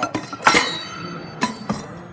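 A scoop dug into a drawer bin of small-grain salt, a gritty crunching rattle about half a second in, then two sharp knocks near the end.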